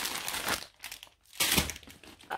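Clear plastic bag of diamond painting drill packets crinkling as it is pulled out of the end of a rolled canvas. There is a burst of crinkling at the start and a shorter, louder one about one and a half seconds in.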